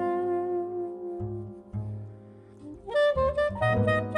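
Soprano saxophone playing a jazz melody in long held notes over plucked upright double bass. The line thins out about two seconds in, then comes back stronger in a new phrase near the three-second mark.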